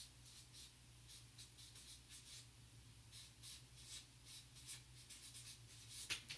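Faint scratching strokes of a marker writing on a paper chart, a couple of strokes a second, over a low steady hum.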